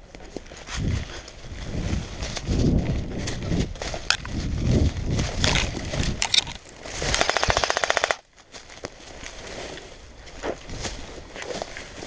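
Airsoft gun firing one full-auto burst of about a second: a rapid, even rattle that stops abruptly. Before it come several seconds of irregular rustling and thumping as the wearer moves through undergrowth.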